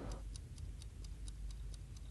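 Analog alarm clock ticking, faint quick, even ticks at about four a second.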